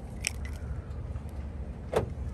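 Small clicks from a car's remote key fob being handled, a faint one about a quarter second in and a sharper, louder one near the end as the unlock button is pressed, over a low steady rumble.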